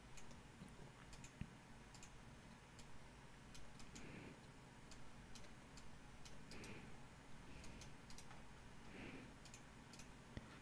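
Near silence broken by faint, irregular computer mouse clicks.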